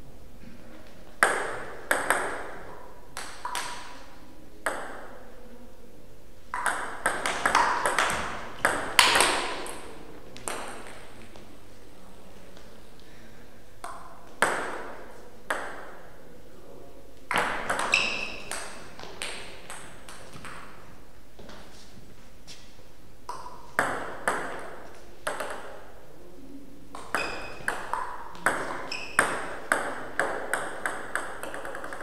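Table tennis rallies: the plastic ball clicks sharply off the players' rubber-faced bats and the tabletop. The strikes come in quick clusters of several hits, about six bursts separated by pauses of a few seconds between points.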